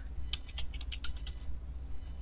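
Computer keyboard being typed on: a run of light, irregularly spaced key clicks as a word is keyed in.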